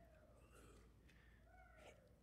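Near silence: room tone, with a few very faint short gliding squeaks, the clearest near the end.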